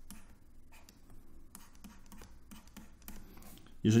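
Faint scratching and tapping of a stylus on a tablet as a short arrow and the letters "HA" are drawn, heard as a series of short, soft pen strokes.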